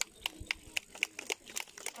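Scattered hand clapping from a few spectators, separate sharp claps about four a second, unevenly spaced.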